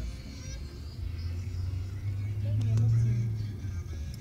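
Low rumble inside a moving car's cabin, swelling louder about two and a half seconds in, with a couple of sharp clicks near the middle.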